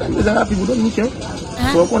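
Speech: a person talking, with a sharp hissed 's' sound near the end.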